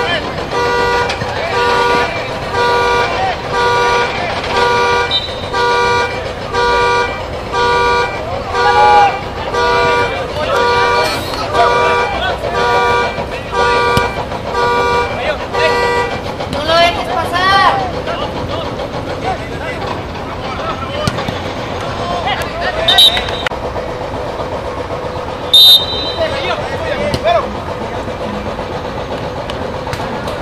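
A car horn honking in a steady rhythm of short two-note blasts, about one a second, for roughly the first sixteen seconds, then stopping. Shouting voices come through over it.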